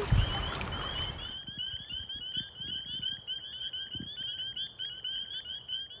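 Night chorus of northern spring peepers: many high, short upswept peeps, overlapping in a dense, continuous stream.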